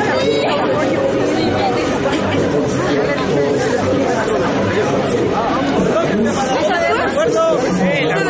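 Crowd chatter: many people talking at once, close around the microphone, with no single voice standing out.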